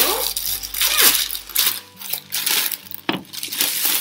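A clear plastic bag of cornflakes crinkling and rustling as it is handled and opened, the dry flakes rattling inside with irregular crackles.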